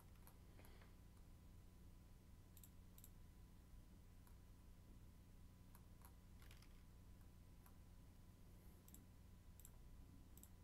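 Near silence with faint computer mouse clicks, about a dozen at irregular intervals, over a low steady hum.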